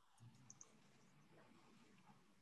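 Near silence, with a few faint computer mouse clicks in the first second.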